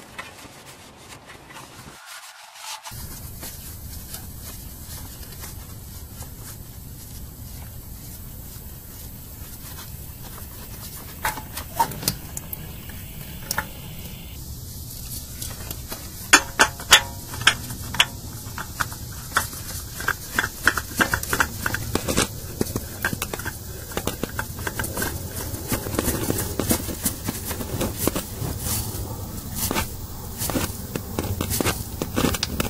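Irregular clicks, scrapes and knocks of a gloved hand working a spin-on oil filter against the engine, over a steady hiss. The clicks are sparse at first and come thick and sharp from about halfway on.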